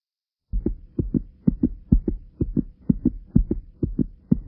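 Fast heartbeat, each beat a quick double thump (lub-dub), about two beats a second. It starts about half a second in after silence.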